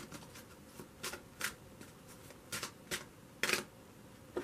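A deck of tarot cards being shuffled by hand: a handful of short, separate swishes of card sliding on card, the loudest a little before the end.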